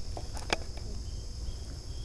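A few footsteps clicking on loose stones, under a steady high-pitched insect chorus and a low rumble of wind and handling on the microphone.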